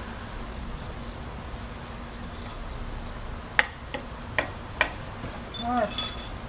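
Four short, sharp knocks a little under half a second apart, over a steady background hum, with a voice starting just before the end.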